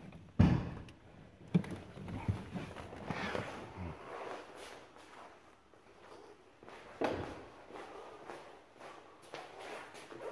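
A sharp clunk about half a second in, then rustling, footsteps and smaller knocks, and another clunk about seven seconds in, as a person gets out of the car and walks round to its front. The clunks fit the car's door and hood-release latch.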